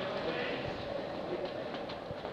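Sneaker footfalls on artificial turf as an athlete steps quickly through a row of mini hurdles: a few dull, irregular thuds over a steady background noise.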